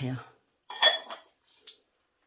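A glazed ceramic plant pot set down with one sharp, briefly ringing clink about a second in, then a lighter tap.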